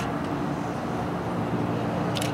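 Steady low outdoor background rumble with a faint, even hum.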